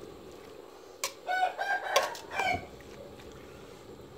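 A rooster crowing once, a pitched call of about a second and a half broken into several parts. Just before it, a metal ladle knocks against the cooking pot.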